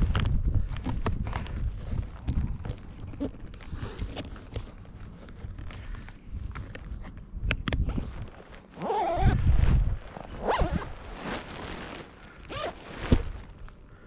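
Wingsuit fabric and zippers rustling and scraping close to the microphone, with scattered clicks, and gusts of wind buffeting the microphone, the strongest about two-thirds through.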